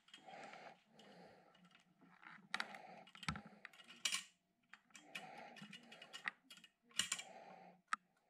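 Hands handling and twisting thin insulated wire: irregular small clicks and soft rustles, with a few sharper clicks about two and a half, three, four and seven seconds in.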